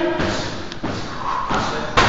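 Dull thuds of Muay Thai strikes landing on Thai pads, a few knocks spread out, with a sharper smack at the end.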